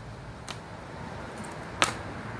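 Wooden color guard rifle being handled in the hands: a faint tap about half a second in and a sharper click near the end. Underneath is a low rumble of wind on the microphone.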